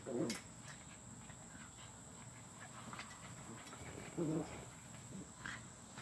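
An American Staffordshire terrier puppy and a Chihuahua–pit bull mix puppy play-fighting, with short growls right at the start and again about four seconds in, over a steady high insect trill.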